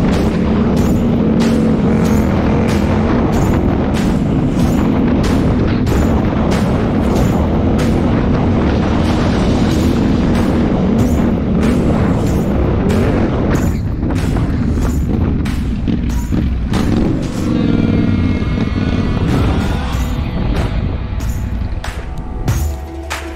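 Background music with a steady beat of about two per second, with a motorcycle engine and a low rumble of wind running underneath.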